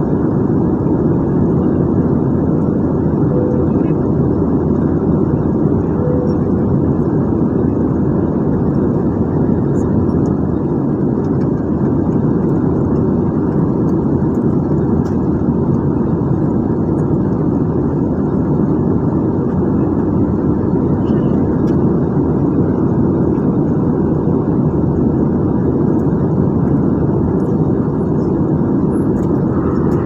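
Steady roar of a jet airliner's engines and airflow heard inside the cabin in flight, even and unchanging throughout.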